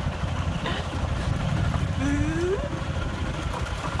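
Open-sided cart driving along, a steady low rumble of the vehicle with wind buffeting the microphone, and a short rising vocal sound about two seconds in.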